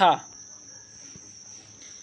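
A spoken syllable with falling pitch right at the start, then a pause with a steady high-pitched tone running unbroken underneath.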